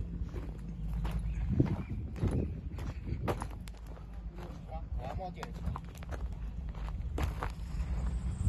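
Footsteps crunching on loose gravel, irregular and close, over a steady low hum.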